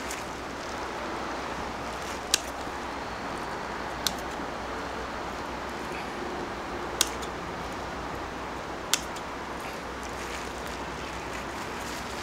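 Four sharp snips of long bonsai pruning scissors cutting small Lebanon cedar twigs, spaced about two seconds apart, over a steady background hiss.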